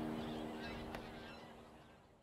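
Acoustic guitar's last chord dying away and fading out, with geese or other waterfowl honking faintly behind it.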